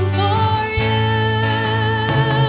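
A woman singing a long held note in a worship song, her pitch wavering slightly, over band accompaniment.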